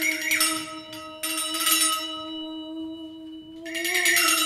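A woman's voice holding one long, steady sung note while a handheld jingle shaker is shaken in three short bursts.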